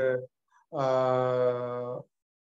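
A man's voice, heard over a video call, trails off a phrase of Tamil speech, falls silent for a moment, then holds one long level 'aaa' at a steady pitch for over a second: a drawn-out hesitation sound before he goes on.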